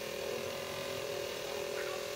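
Small electric motor of a radio-controlled model boat running under way at a steady speed, a constant buzzing hum.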